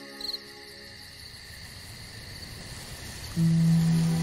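Night-time ambience of crickets chirping, with a short pulsed chirp about a quarter-second in, as soft sustained ambient music chords die away. Near the end, a new low sustained music chord comes in loudly.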